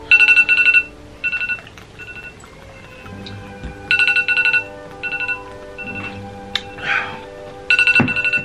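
Smartphone ringtone: rapid, high electronic trills in short repeated bursts, over faint background music.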